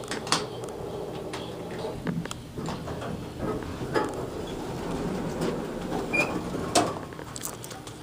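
Schindler hydraulic elevator car travelling, heard from inside the car: a steady hum and rumble with a few light clicks and knocks, and one short high beep about six seconds in.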